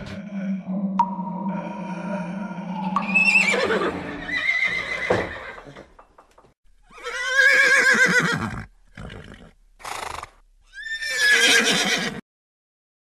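A horse whinnying several times: long, wavering neighs that fall in pitch, the loudest in the middle and another at the end. A held music tone fills the first few seconds before the neighs begin.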